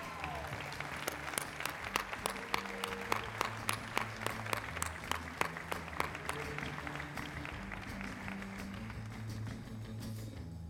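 Audience applauding over music with sustained low notes; the clapping is dense at first and thins out over the last few seconds while the music carries on.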